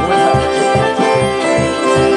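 Live accordion and banjo music: sustained accordion chords over a steady low beat of about four pulses a second.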